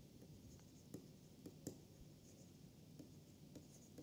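Faint scratching and a few light taps of a stylus writing on a tablet.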